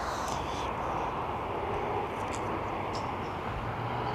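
A steady, even rushing noise with no distinct events, the sound of a distant engine.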